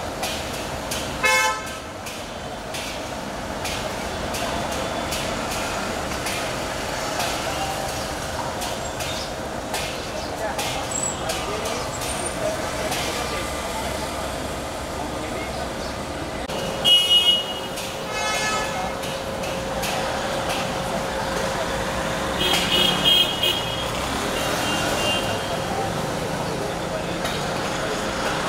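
Busy city street traffic with vehicle horns honking: a short honk about a second in, two loud honks a little over halfway through, and a cluster of honks near the end.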